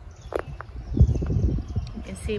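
Footsteps on garden ground: a cluster of low thumps about a second in, the loudest sound here, with a brief high blip shortly before.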